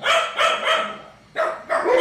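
A dog barking: a quick run of several barks, a short pause around the middle, then more barks.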